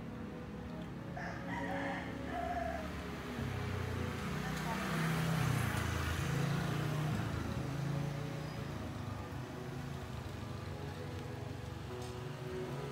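Street ambience: a rooster crowing over the low drone of an engine that swells and fades, loudest around the middle.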